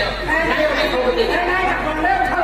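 Speech only: stage actors talking in dialogue, picked up by microphones hanging over the stage.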